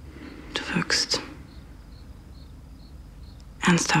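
A short breathy whisper about half a second in, over quiet room tone with a faint, regular high chirping like crickets. A voice starts speaking near the end.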